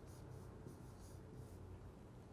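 Faint scratching and light tapping of a stylus writing on a large touchscreen display, over a low steady hum.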